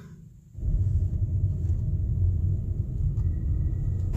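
Low, steady rumble of wind buffeting a handheld phone's microphone outdoors. It cuts in suddenly about half a second in.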